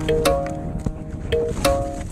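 Background music: held, chord-like notes changing every half second or so over a beat of sharp percussion hits.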